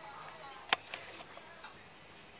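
A single sharp click about two-thirds of a second in, followed by a couple of fainter ticks.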